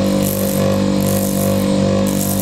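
Electric slipper-finishing machine running steadily with a motor hum, its sandpaper drum sanding the edge of a slipper sole, with a hiss of sanding that comes and goes as the sole is worked against it.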